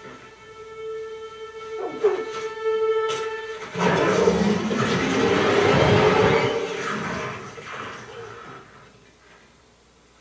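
Television drama soundtrack: a held, tense string-like chord, then about four seconds in a sudden loud rushing noise that lasts about three seconds and fades away.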